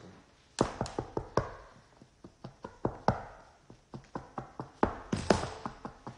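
Fingers tapping and drumming on a kitchen countertop. There are many short, sharp taps in quick, irregular runs, starting about half a second in.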